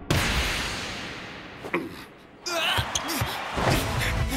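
Animated volleyball sound effects: a sharp smack of the ball at the net, followed by a rush of noise that fades over about two seconds. A second, shorter thud of the ball comes near the middle, then voices.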